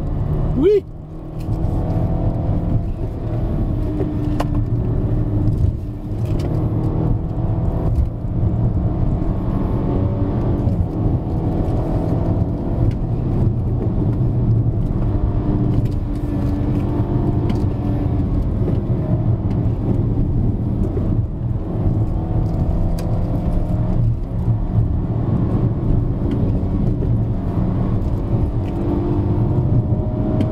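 Cabin sound of a BMW F30 330i's turbocharged 2.0-litre four-cylinder engine under load on a winding uphill drive, its pitch rising and falling with throttle and gear changes over steady road and tyre noise, with a brief dip about a second in.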